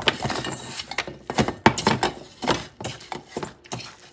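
Hands squeezing and mixing raw cube steak in its oil-and-vinegar seasoning in a stainless steel bowl: irregular wet squishing with small knocks and clicks against the bowl.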